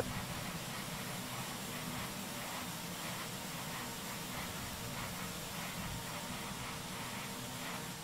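A steady, even hiss of gas venting with a faint low hum beneath it: simulated launch-pad ambience.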